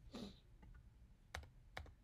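Near-silent room with a brief soft noise near the start, then two faint sharp clicks about half a second apart, such as keys pressed on a laptop keyboard.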